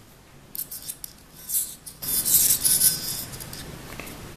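A steel screwdriver blade held against the energized horseshoe electromagnet of a Philips Sonicare toothbrush drive, buzzing and rasping as the coil's polarity flips rapidly back and forth. A few light clicks come first, and the buzz is loudest between about two and three seconds in.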